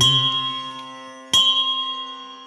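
A bell in a devotional music recording struck twice, about a second and a third apart, each strike ringing on and fading away.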